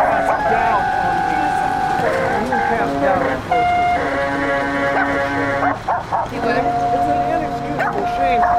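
Layered sound collage: held electronic synthesizer tones from an iPhone synth app that switch pitch every second or two, mixed with fragments of voices and a dog barking.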